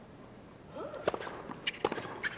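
A tennis ball bounced on a hard court before a serve: a few sharp knocks from about a second in, over faint crowd voices.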